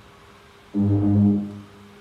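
A single low, steady tone, under a second long, starting abruptly a little before the middle and fading out.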